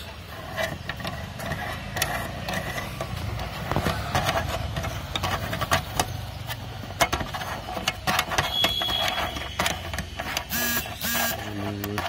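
Irregular clicks, knocks and scraping from hands working the motorcycle's windshield-mount screws and handling the camera, over a steady low rumble. A short tonal sound comes near the end.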